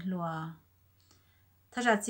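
A woman speaking, pausing about half a second in and resuming shortly before the end, with a faint click during the pause.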